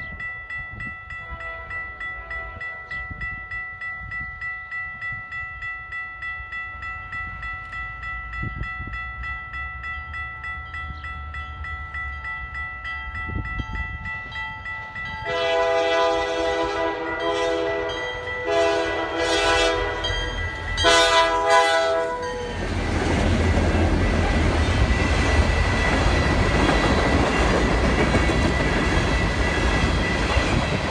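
Grade-crossing bells ring with a steady pulse as a Canadian Pacific freight approaches. About 15 seconds in, the lead diesel locomotive sounds its air horn in several blasts, two long ones followed by shorter ones, then the locomotives and ballast hopper cars pass close by with a loud, steady rumble of engines and wheels on the rails.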